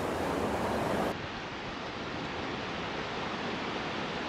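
Steady rush of a shallow river running over rocks, mixed with wind on the microphone; it drops a little in level and gets duller about a second in.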